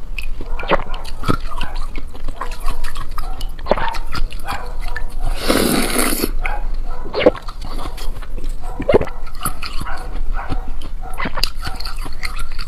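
Chunk of white ice being bitten and crunched close to a lapel microphone: scattered sharp cracks and crackles, with one long, loud crunch about halfway through.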